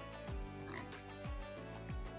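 Quiet background music: soft sustained tones over a low, regular drum beat of about two thumps a second, each falling in pitch.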